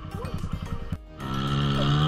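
Dirt bike engine running unevenly at low revs for about a second, under background music. After a short dip, a steady held musical chord carries on.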